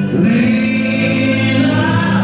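Music with choral singing: held sung notes that change just after the start.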